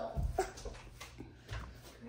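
A toddler making a few faint, short whimpering fusses, wanting to be picked up, with a couple of soft low thumps.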